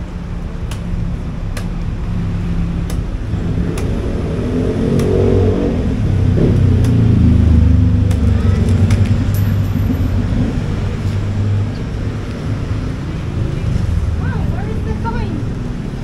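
A motor vehicle passing on the street, its engine building to its loudest in the middle and then fading. Over it come sharp knocks about a second apart: a cleaver chopping open a green coconut.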